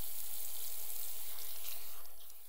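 Water running steadily from a tap into a sink while hands are washed under it.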